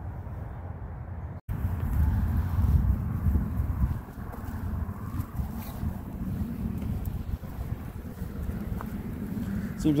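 Gusty wind rumbling on the microphone outdoors, low and uneven; it cuts out for an instant about a second and a half in and comes back louder.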